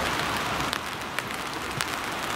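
Steady open-air hiss of a football pitch with a few short, sharp knocks scattered through it, the last near the end.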